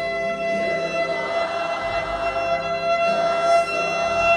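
Violin holding one long sustained note, played live and amplified through a large hall's sound system.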